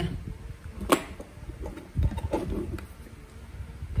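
Hands handling test leads and an alligator clip at a workbench: a sharp click about a second in and a low thump about two seconds in, with light rustling between; no motor running.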